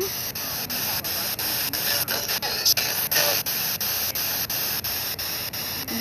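Ghost-hunting spirit box sweeping through radio frequencies: steady static hiss broken by regular clicks about four times a second, with faint fragments of radio voices a little past the middle.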